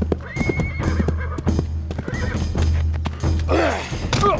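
Horse sound effect: a horse whinnies just after the start and again briefly about two seconds in, with clip-clopping hoofbeats, over a low steady music score.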